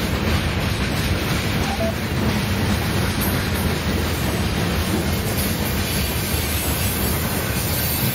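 Freight train cars, mostly tank cars and boxcars, rolling steadily past at close range: a continuous low rumble of steel wheels on rail.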